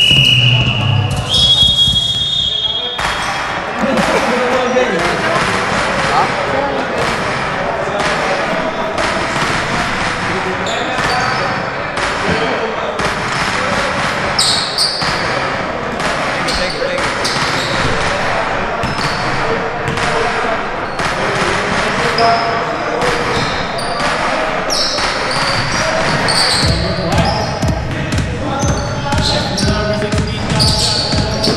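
Basketball being dribbled on a hardwood gym floor, with players' and spectators' voices echoing in the hall. Two long, shrill whistle blasts come in the first few seconds.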